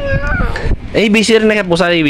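A toddler's high-pitched, wordless whining vocalizations in two stretches: a short one at the start, then a longer one from about a second in.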